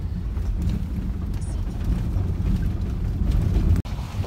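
Steady low rumble of a box truck running, heard from inside the cab. The sound drops out for an instant near the end.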